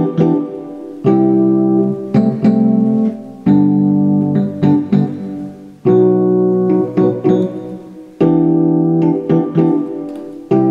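Piano chords played on an electronic keyboard, working through a slow repeating G, B, E minor, C progression. A new chord is struck about every two and a half seconds and left to ring and fade, with lighter notes played in between.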